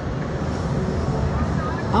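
Wind rushing over the microphone of a camera mounted on a swinging slingshot-ride capsule, a steady low rush.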